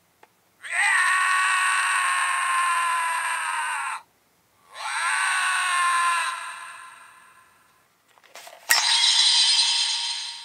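Recorded yelling of Kamen Rider Ouja played through the small speaker of a CSM V Buckle toy belt. There are two long yells of about three seconds each, falling slightly in pitch, and the second one fades out. Near the end there are a few faint clicks and then a third loud burst of sound.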